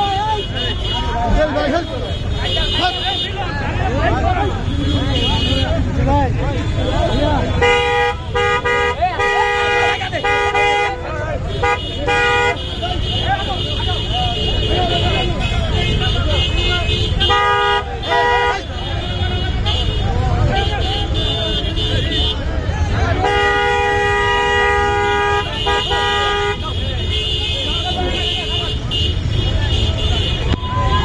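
Dense crowd chatter and shouting, with a vehicle horn honking through it. It gives a run of short toots about a third of the way in, two more a little later, and a longer blast about three-quarters of the way through.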